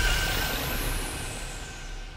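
A hissing noise fading away steadily, with a faint steady high tone under it.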